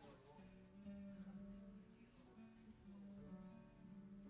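Faint electric guitar playing soft, held notes that change every second or so, with a couple of light clicks.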